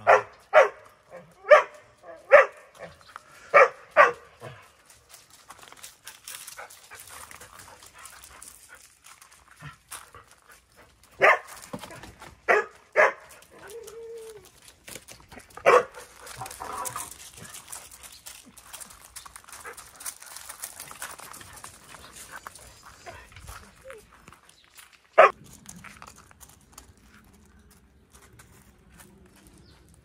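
Dog barking in short, sharp single barks: a quick run of about six in the first four seconds, then scattered barks a few seconds apart, the last one about 25 seconds in.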